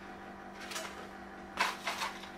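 Low room hum, then near the end two short rustles as a hand reaches into a bowl of popcorn.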